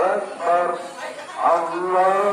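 A cow lying bound and held down for slaughter, mooing in short pitched calls, about three of them.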